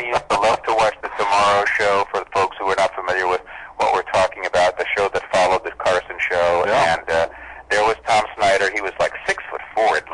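Speech only: men talking in a radio interview.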